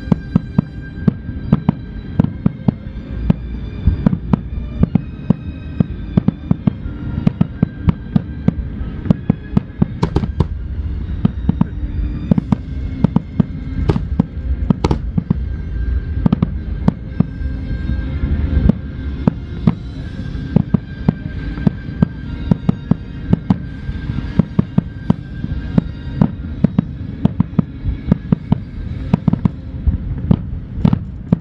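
Nagaoka aerial firework shells bursting in rapid succession: a dense, unbroken barrage of sharp bangs, several a second, over a low rumble, with music playing underneath.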